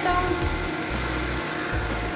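Stand mixer running steadily as it beats creamed butter and sugar with a freshly added egg, under background music.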